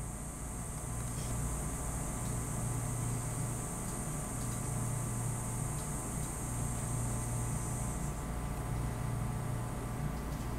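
Steady low electrical or fan-like hum with a thin high hiss above it. The hiss drops away about eight seconds in, and a few faint ticks sound now and then.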